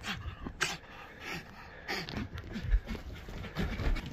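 Jack Russell terrier panting in short, irregular breaths at close range during rough play, with a few low thumps from the phone being knocked about.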